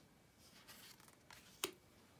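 Tarot cards being handled: a faint slide of a card off the deck, then a single light tap about one and a half seconds in as it is laid on the pile.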